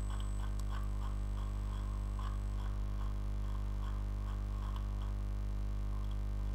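Steady electrical mains hum with a buzzy stack of overtones, under faint irregular clicks a few times a second.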